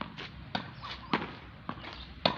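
A tennis ball being rallied against a practice wall: a series of about five sharp knocks from racket strikes, the ball bouncing on the hard court and hitting the wall, the loudest a little past the middle.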